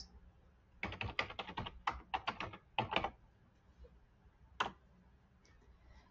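Computer keyboard typing: a quick run of about a dozen keystrokes over roughly two seconds, then one more lone click a couple of seconds later.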